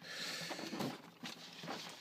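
Cardboard case box sliding and scraping across a tabletop as it is pushed by hand, for about the first second, followed by a few light handling knocks.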